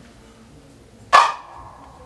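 A single sharp open-hand slap on a small hand-held sogo drum about a second in, with its ring fading out over about half a second.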